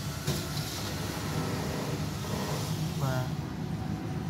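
1995 SsangYong's engine idling steadily, a low even hum heard from beneath the vehicle.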